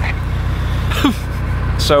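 A narrowboat's inboard diesel engine running steadily with a low, even drone, under a brief laugh and the start of speech near the end.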